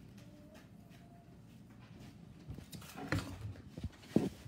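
Quiet room tone with a laptop's speaker playing a video's sound very faintly, then a few short handling clicks and a brief voice about three seconds in.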